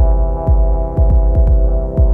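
Electronic synthpop track: a deep kick drum with a quickly falling pitch strikes about twice a second, with a few extra strokes between, under a sustained synth chord.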